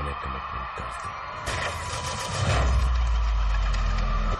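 Film-trailer soundtrack: dramatic music layered with sound effects. There are two sharp hits, about a second and a half and two and a half seconds in, and the second is followed by a long, deep bass rumble.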